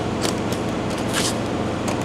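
Metal latches of a hard-shell guitar case being flipped open: a few short, sharp clicks over a steady low background hum.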